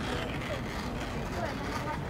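City street ambience: steady traffic noise with indistinct voices of people nearby.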